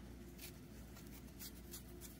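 Faint rustling of fingers handling a knitted ball of chunky yarn while picking up a loop, with a few brief, soft scratches.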